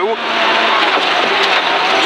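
Rally car running at speed on a gravel stage, heard inside the cabin: a steady dense rush of gravel and tyre noise over the engine.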